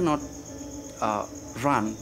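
Night insects chirping in a steady, fast high-pitched trill, with short fragments of a man's voice over it.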